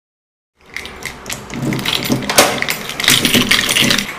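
A bunch of keys jingling, with sharp metal clicks at a front door's keyed lock, starting about half a second in and growing louder and busier.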